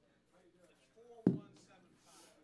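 Faint voices murmuring, with one sharp thump a little over a second in.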